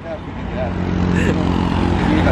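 A motor vehicle's engine on the road, a steady low hum growing louder over the first second as it draws near.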